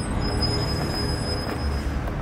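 Sound effect of a motor vehicle: a steady rumbling noise with a thin, steady high whine over it.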